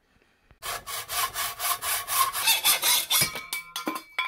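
Hand saw, most likely a hacksaw, cutting through a steel propane cylinder in a run of quick back-and-forth strokes. A little over three seconds in, a piece of metal rings out as the cut piece comes free.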